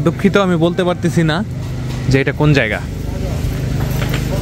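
Street noise: people talking for the first second and a half and again about two seconds in, over a steady low motor hum.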